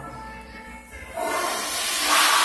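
Faint background music, then about a second in a loud, steady rushing hiss starts and keeps building.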